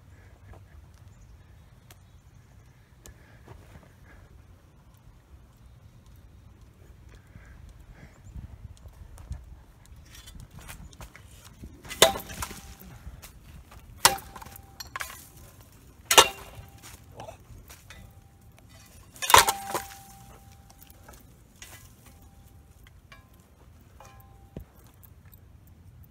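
A running Hampton Bay Littleton ceiling fan struck hard four times, each blow a sharp crack followed by a brief metallic ring, with lighter knocks and clicks between, over a low steady rumble.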